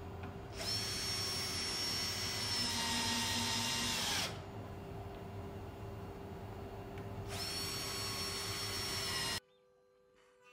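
Cordless drill-driver driving screws through a walnut board into the router table. Its motor whines twice, first for about three and a half seconds and then for about two seconds near the end, over a steady hum that cuts off suddenly shortly before the end.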